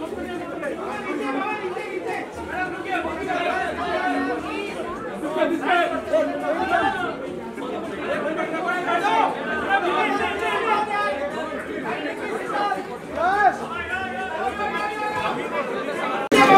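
Crowd chatter: many voices talking over one another without a break.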